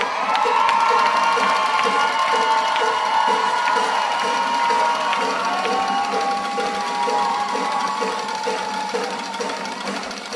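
A small audience cheering and whooping, with long held whoops and clapping in a steady beat, slowly dying down.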